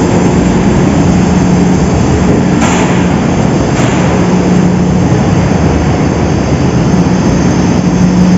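Sugar mill centrifuge machinery running: a loud, steady mechanical noise over a constant low hum, with two brief higher surges about three and four seconds in.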